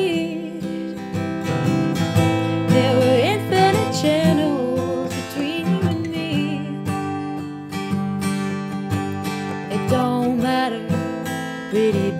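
Acoustic guitar strummed steadily, with a voice singing wavering, wordless notes over it in the first few seconds.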